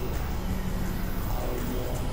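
Several music tracks playing over each other at once: a dense, steady low drone with a few tones sliding in pitch above it.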